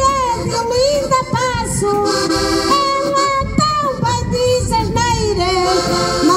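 Woman singing a cantar ao desafio verse into a microphone, her voice wavering with vibrato on held notes, over two accordions playing steady sustained accompaniment chords.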